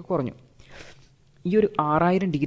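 A man lecturing in Malayalam; his speech breaks off briefly and resumes about a second and a half in, with only a faint hiss in the pause.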